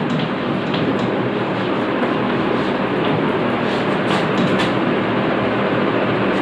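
Steady rushing background noise, even throughout, with a few faint scratchy strokes of chalk on a blackboard.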